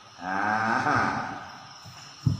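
A man's voice holding one long, drawn-out syllable for about a second, then trailing off.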